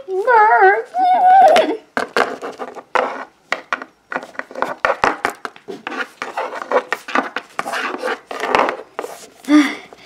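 A child's voice imitating a horse's whinny, high and wavering, for about a second and a half at the start. It is followed by a long run of short, quick mouth noises.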